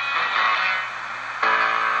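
Music from a Grundig shortwave radio's speaker as the talk broadcast breaks. It is soft at first, then a loud held chord comes in about one and a half seconds in.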